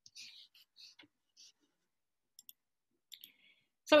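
Near quiet with a few faint scattered clicks and soft breathy hisses, then a woman's voice starts speaking near the end.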